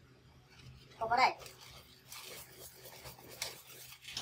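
Latex modelling balloons rubbing against his hands and against each other as they are handled, a faint scratchy rubbing through the second half.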